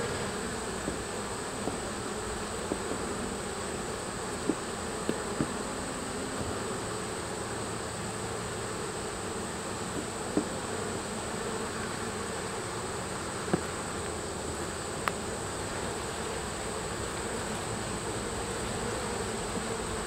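Honey bees buzzing steadily around an open hive while a brood frame is held out of the box. A few short taps sound now and then over the buzz.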